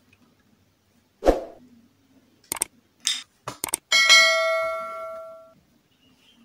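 Subscribe-button animation sound effect: a soft thump about a second in, a few sharp clicks, then a bright bell ding at about four seconds that rings out and fades over about a second and a half.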